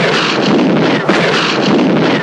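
Battle sound effects of shell explosions: two sudden blasts about a second apart, each followed by a steady rushing noise.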